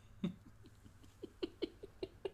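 A man's stifled laughter: one short laugh sound just after the start, then from about a second in a run of short breathy pulses, about five a second, each dipping slightly in pitch.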